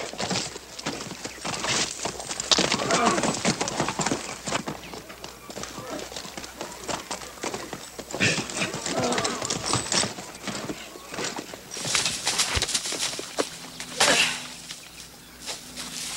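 Horse hooves thudding irregularly on corral dirt as a rider works a bucking horse, with short shouts now and then.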